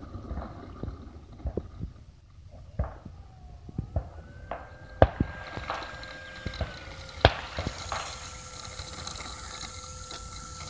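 Model Cessna 182's motor giving a thin, steady whine as the plane rolls out on tarmac after landing. The whine rises a little about four seconds in and steps down about seven seconds in. Sharp clicks and knocks are scattered throughout, the loudest about five and seven seconds in.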